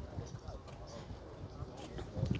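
Footsteps on pavement, a few irregular soft steps, with faint voices of people in the background.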